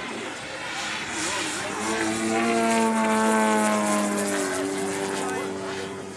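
Radio-controlled Extra 330SC aerobatic model plane's engine and propeller making a fly-by pass: the engine note swells, is loudest in the middle, and drops in pitch as the plane goes past.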